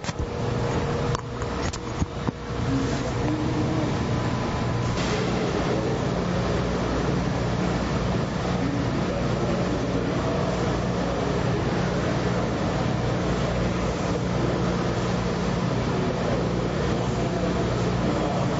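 A steady mechanical drone with a low hum.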